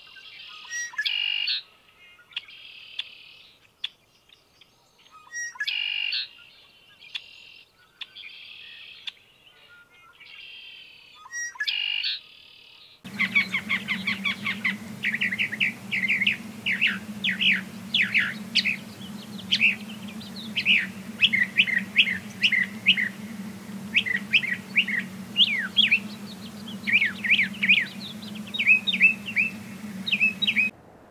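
Male red-winged blackbird calling, short buzzy calls repeated every two to three seconds. About 13 seconds in, this cuts to a northern mockingbird singing a fast, unbroken string of varied chirping phrases over a low steady hum.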